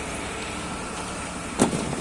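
Steady background noise of an outdoor construction yard, a continuous even rumble and hiss like distant vehicles or machinery, with one brief sharp sound near the end.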